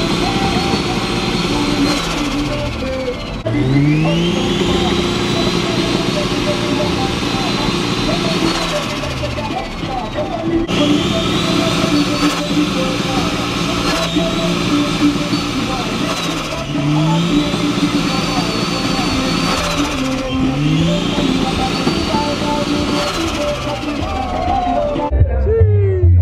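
Turbocharged Toyota 2JZ VVT-i straight-six in a Lexus GS, revved again and again: each time the pitch climbs quickly, is held high for a few seconds, then drops back, about five times over.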